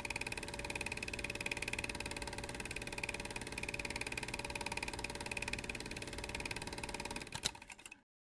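Motor-driven film mechanism running with a fast, even clatter and a steady high whine. It stops about seven seconds in, with one sharp click as it fades out.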